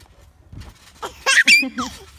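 A short burst of high-pitched laughing and squealing starting about a second in, ending in a falling squeal.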